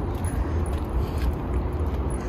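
Steady low outdoor rumble with a faint background hiss and a few faint clicks.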